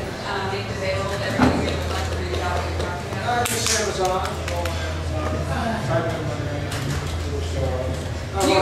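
Indistinct speech in a room with people at tables, over a steady low hum.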